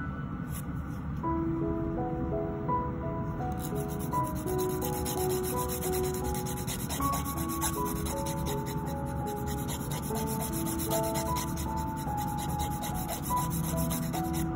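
Diamond hand nail file rasping across the tip of a fingernail in short, rapid back-and-forth strokes, which become continuous a few seconds in, over soft melodic background music.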